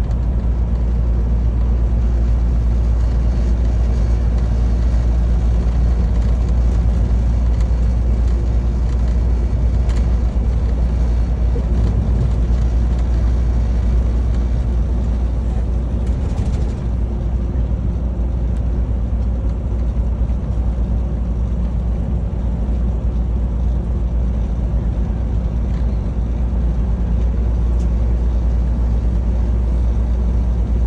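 Steady low rumble of a semi-truck's engine and tyre noise heard from inside the cab while cruising on the highway.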